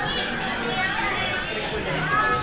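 Indistinct chatter and children's voices, steady throughout, with no single clear words.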